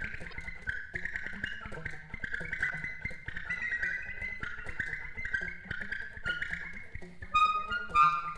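Free-improvised alto saxophone in a live recording: an unbroken stream of very fast, dense note runs in a high register, swelling into a louder flurry near the end.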